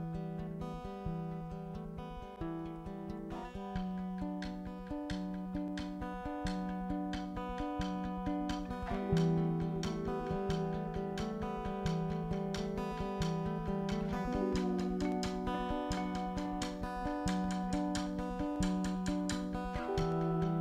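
Live band playing the instrumental opening of a song: a repeating plucked guitar pattern over drums, with no singing. The music grows louder and fuller about nine seconds in.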